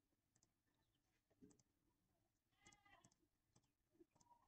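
Near silence, with a few very faint computer mouse clicks as points of a polygonal lasso selection are set.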